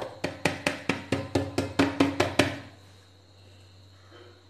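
A palm pats the bottom of an upturned steel dhokla tin about a dozen times in two and a half seconds, light quick pats with a short metallic ring. The patting loosens the steamed dhokla so it drops onto the plate beneath.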